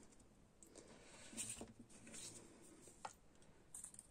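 Near silence, with faint rustling and a few small clicks as hands handle a cotton lace ribbon over a craft mat.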